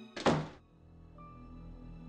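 A single short thud about a quarter of a second in, the loudest sound here, followed by soft sustained background music.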